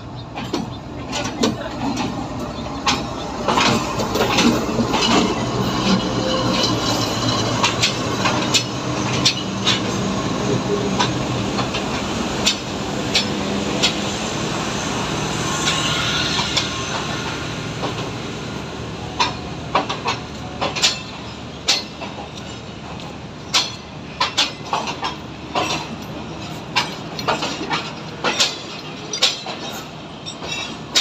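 A passenger train passing at close range on a station track. The diesel locomotive's engine runs for roughly the first half. Then the coaches roll by with sharp, irregular wheel clacks over the rail joints, coming thicker toward the end.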